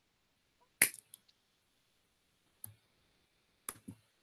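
A few short, sharp clicks over faint background hiss, the loudest about a second in and a quick pair near the end.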